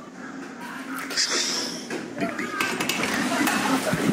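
A knife working through a watermelon on a wooden cutting board: a short scraping slice about a second in and light clinks of the knife on the board, with voices faintly behind.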